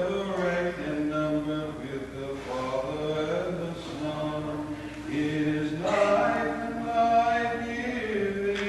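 Unaccompanied Byzantine chant: voices singing a slow melody of held notes that step from one pitch to the next without a break.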